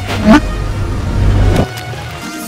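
Loud edited sound effect, a deep rumble with sweeping whooshes, laid over music; the rumble cuts off abruptly about a second and a half in.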